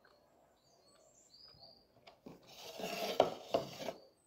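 Rustling and scraping of food being handled at a table, with a couple of sharp clicks, getting louder in the second half. Small birds chirp faintly in the first half.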